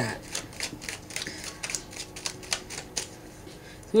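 A quick run of light, irregular clicks, about five or six a second, that dies away about three seconds in.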